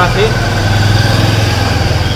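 An engine idling with a steady low hum.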